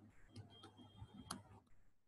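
Near silence with a few faint, sharp taps of a stylus on a tablet screen as a dashed line is drawn, the clearest about a second and a half in.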